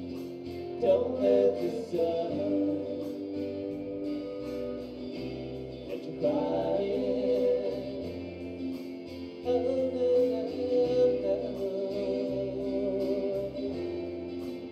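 Live rock band playing a song through a PA: electric and acoustic guitars, bass guitar and drums, with sung male vocals in phrases that come in about a second in, around six seconds and again near ten seconds.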